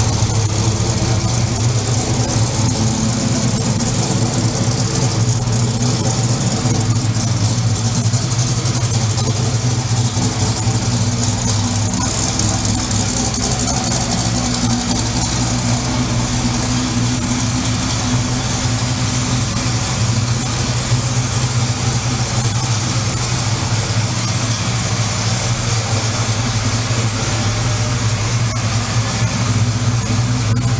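1964 Chevelle's 383 cubic-inch stroker V8 idling steadily through its stainless steel dual exhaust, with a deep rumble.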